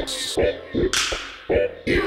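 Hip-hop instrumental beat: a sparse drum pattern of low kick hits about every half second, with two sharp snare- or cymbal-like hits, one at the start and one about a second in that rings out.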